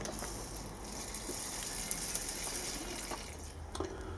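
A fine spray of water hissing steadily from a hand-held spray nozzle onto potting soil in a plastic cup. It fades out after about three seconds.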